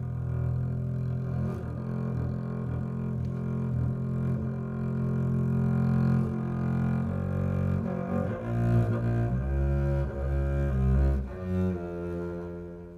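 Solo acoustic double bass played with a bow: a long sustained low note for about the first seven seconds, then a run of shorter notes that change pitch.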